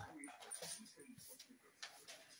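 Two dogs play-fighting, making faint, short vocal noises in quick bursts.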